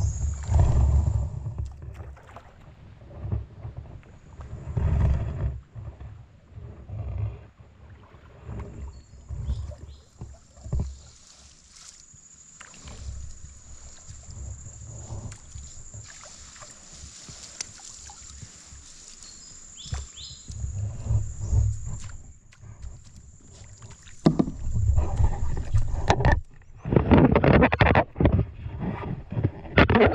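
Water and mud splashing and sloshing in irregular bursts, growing louder and busier near the end. A steady high-pitched insect drone runs through the middle.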